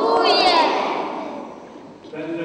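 A group of young children calling out together in unison: one loud, drawn-out shout of many voices that fades away over about a second and a half. It is the first-graders' spoken response while taking the school oath with two fingers raised.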